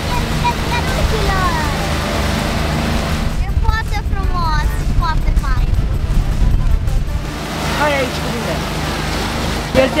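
Motorboat running at speed: a steady engine drone with wind buffeting and rushing water. Voices call out over it for a few seconds in the middle.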